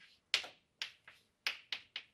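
Stick of chalk tapping against a chalkboard as words are written: about five short, sharp clicks at uneven intervals.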